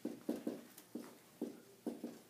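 Dry-erase marker writing on a whiteboard: a quick run of about eight short, separate strokes.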